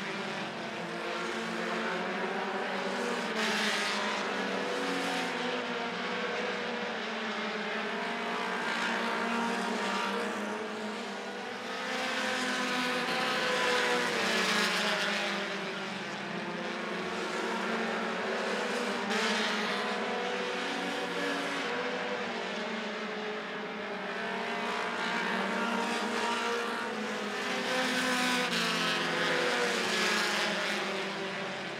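Several short-track stock cars racing laps on an asphalt oval. Their overlapping engine notes waver as the cars run through the corners and swell and fade as they come past.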